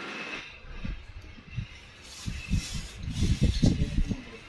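Soft irregular thumps and light rustling from a hand pressing on a plastic-wrapped parcel; the thumps grow more frequent in the last two seconds.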